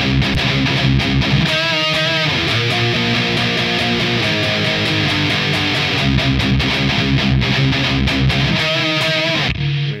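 Distorted electric guitar in drop C tuning playing a palm-muted chugging riff, broken twice by octave notes held with vibrato, once about two seconds in and again near the end. It stops just before the end.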